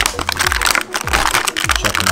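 Stiff plastic blister packaging crackling and crinkling as hands peel it open to free a die-cast toy car, over background music with a regular low beat.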